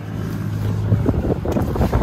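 Gusty wind rumbling on the microphone as a car's front door is opened, with a low steady hum through the first second.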